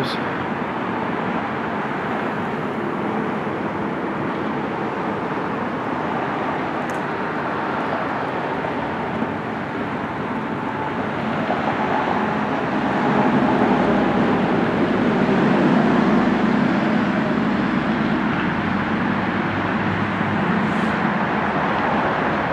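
A Tesla Model S, driverless under Summon, reversing slowly into a parking space. Its steady rolling noise, over constant background noise, swells for several seconds in the middle as the car comes close.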